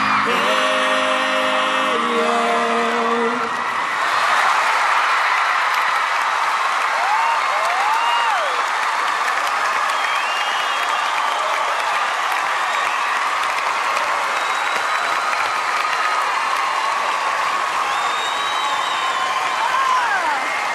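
The song's last chord rings out for the first few seconds, then a large studio audience applauds and cheers, with shrill screams and whoops rising above the applause.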